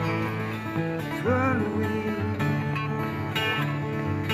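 Live acoustic guitar strummed with a steady picked bass line, the song carrying on between vocal lines. A man's voice sings a short, bending note about a second in.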